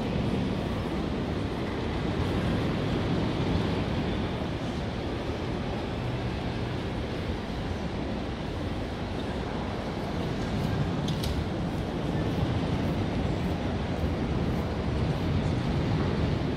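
Steady ambient noise of a large airport terminal hall: an even, low hum and murmur with no distinct events, and a faint click about eleven seconds in.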